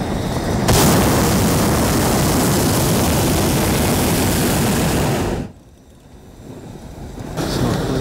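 Hot-air balloon propane burner firing in one long, loud blast that starts just under a second in and cuts off suddenly about four and a half seconds later.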